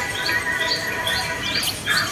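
A bird calling in a fast, even series of short rising chirps, about three a second, over a steady background of held tones.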